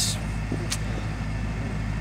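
Steady low hum of an idling engine, with a faint click about three quarters of a second in.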